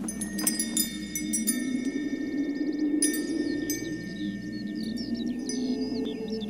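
Wind chimes ringing in clusters of high, sustained tones, struck just after the start and again about halfway through, over a low steady drone. Short bird-like chirps come in during the second half.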